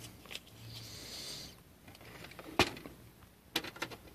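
Quiet handling of small plastic ink sample vials and their holder on a desk: one sharp click about two and a half seconds in, then a few lighter clicks near the end.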